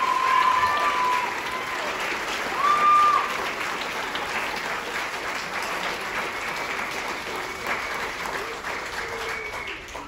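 Audience and band members applauding, the clapping gradually thinning and fading out, with a few voices calling out near the start.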